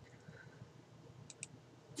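Computer mouse button clicking: two faint, quick clicks close together about a second and a half in, amid near silence.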